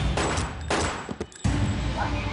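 Pistol gunfire: several shots in quick succession in the first second or so. The shots cut off suddenly and give way to a low rumble.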